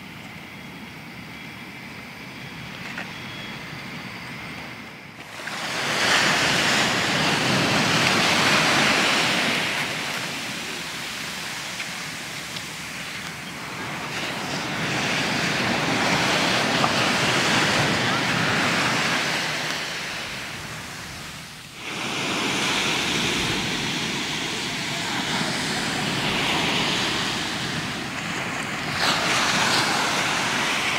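Ocean surf breaking on a sandy beach: a rushing wash that swells and recedes. It is fainter for the first few seconds, then much louder, and it breaks off abruptly twice, where the recording cuts.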